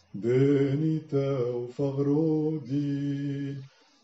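A solo male voice chanting in Syriac, a Maronite liturgical chant of the words of consecration, holding each note steady in short phrases of about a second, and falling silent just before the end.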